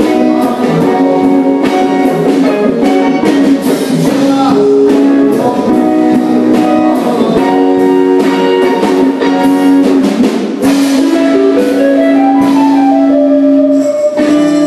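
A blues band playing live: electric guitar lines over bass and a drum kit, with a run of notes stepping upward near the end.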